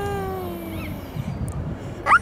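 A toddler's long, wordless vocal sound, one drawn-out note that slowly falls in pitch over about a second.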